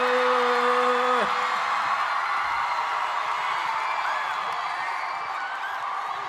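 A theatre audience cheering and applauding, with one long held whoop in the first second; the cheering slowly dies down.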